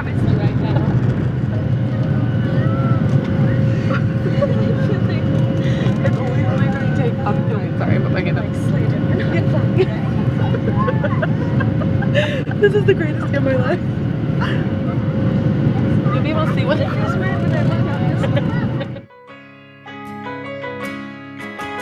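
Boeing 737 cabin noise during the climb just after take-off: a steady low rumble of the engines at climb power and airflow, with a steady hum and faint voices over it. The noise cuts off abruptly near the end and music begins.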